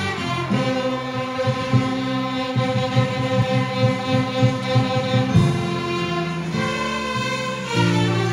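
Children's string section of violins and cellos playing a piece together, with the low part in short repeated bowed notes and the harmony changing every few seconds.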